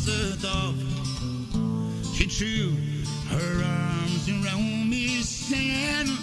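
A man singing a slow Irish folk ballad with vibrato, accompanied by a strummed Takamine acoustic guitar.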